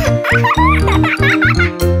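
A cartoon baby's giggling, a quick run of wavering high laughs that stops shortly before the end, over background music with a regular bass line.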